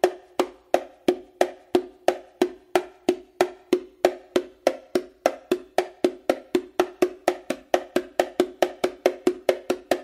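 Hand slaps on the smaller drum of a pair of bongos, played as a slap exercise: a steady, even stream of sharp strikes, about three a second, each with a short ringing tone from the drumhead.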